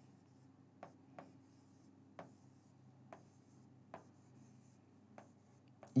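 Pen writing numbers on an interactive display screen: faint taps as the tip touches the glass, roughly one a second, with soft scratching of the strokes between them.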